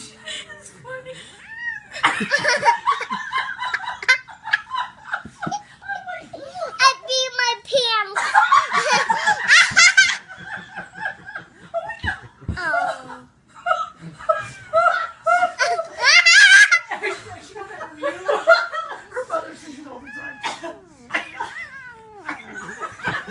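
Toddler girl laughing hard in repeated fits, rising to high-pitched squeals about a third of the way in and again past the middle.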